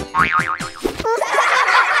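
Cartoon boing sound effect, its pitch wobbling up and down, then a quick rising glide about a second in followed by a hissy swirl, over children's background music.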